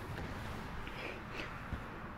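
Quiet room tone with a steady low hum, a few faint soft rustles about a second in and a small click near the end.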